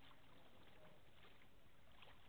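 Near silence: faint, steady background noise by the water.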